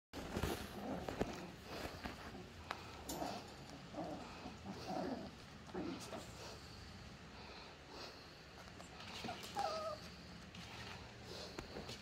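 Young Cavoodle puppies making short whines and whimpers, with one clearer, higher whine near the end. A few sharp knocks are heard among them.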